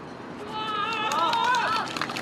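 Men's voices shouting drawn-out calls, loudest from about half a second in until just before the end, over a rapid patter of light clicks.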